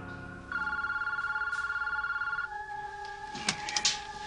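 Telephone ringing: one warbling electronic ring about two seconds long, followed near the end by a few sharp clicks.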